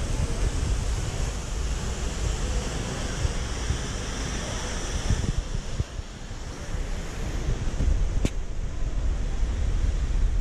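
Wind buffeting the GoPro's microphone in low gusts, over a steady rush of running fountain water that thins out about halfway through.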